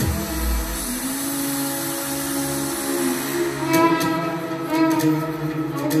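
Violin played live over a deep house backing track. The kick drum and bass drop out about a second in, leaving held chords and the violin line. Percussion and plucked notes come back in shortly after the midpoint.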